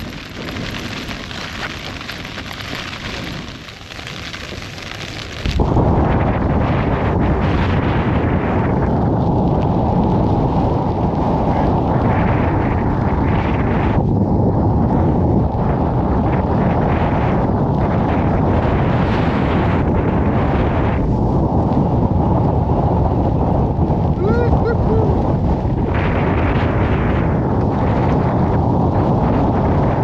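Rain pattering on a tent's flysheet, then from about five and a half seconds in, strong storm wind blasting across the microphone, loud and unbroken.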